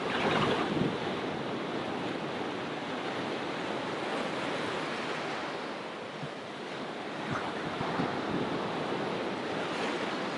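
Small waves breaking and washing up a sandy shoreline: a continuous rush of surf that swells louder right at the start and again about seven to eight seconds in.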